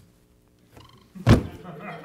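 A single sharp thump about a second and a half in, the loudest sound, followed by scattered quiet laughter.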